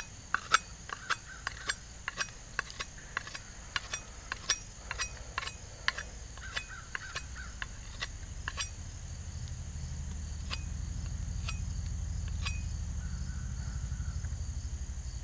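Cold Steel Bushman knife cutting a point onto a wooden stick: quick sharp cuts of the blade into the wood, about three a second, thinning to a few scattered strokes after about nine seconds. A steady high insect drone, typical of crickets, runs underneath.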